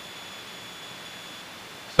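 Steady in-flight cockpit noise of a Scottish Aviation Bulldog light trainer heard through the headset intercom: an even hiss of engine and airflow with a thin, steady high whine over it.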